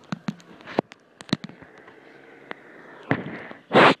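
Handling noise from a phone being moved around: a string of sharp, irregular clicks and knocks on the microphone.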